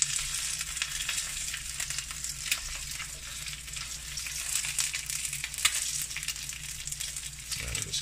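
Two eggs sizzling in a nonstick frying pan on the pan's leftover heat after the electric burner has been switched off: a steady crackling hiss with scattered pops. Occasional soft scrapes come from a silicone spatula being worked between the eggs against the pan.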